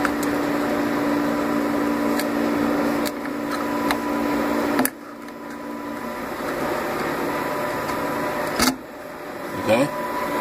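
Steady electrical or mechanical hum with low steady tones, over which an EEPROM puller clicks lightly a few times as a chip is rocked out of its socket on a sewing machine's control board. The hum drops about halfway through.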